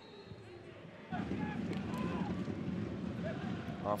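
Football stadium crowd noise coming in about a second in: a steady din from the stands with scattered faint shouts.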